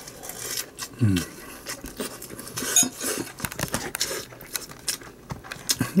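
Metal spoon clinking and scraping against a glass bowl of fried rice, a scattered run of short clicks.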